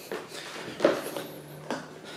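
Two knocks of a foot stepping onto an electric longboard's deck, under a faint steady hum.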